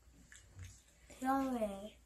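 Speech only: a voice saying a drawn-out "no", falling in pitch, a little over a second in.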